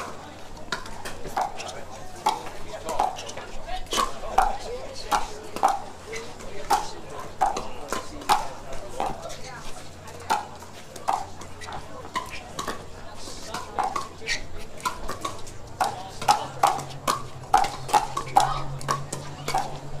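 Pickleball paddles hitting a plastic ball back and forth in a long rally: a steady run of sharp pops, roughly three every two seconds.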